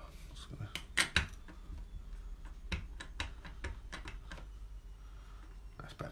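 Clear acrylic stamp block and ink pad handled on a craft mat: a string of light clicks and taps as the stamp is inked, the sharpest two about a second in.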